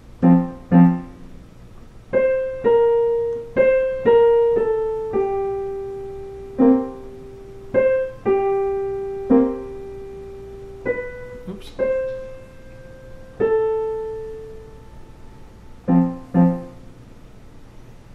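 Digital piano playing a simple beginner's waltz in F major, slowly and haltingly. It opens and closes with pairs of low chords, with single melody notes between them that are each left to ring and fade, spaced unevenly.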